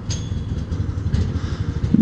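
Small gasoline go-kart engine idling with a low, uneven rumble that sounds like a lawn mower.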